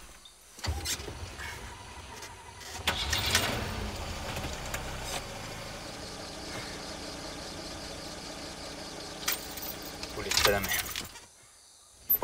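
Old pickup truck's engine being started, with a few uneven bursts in the first three seconds, then settling into a steady idle. A louder burst of noise comes near the end.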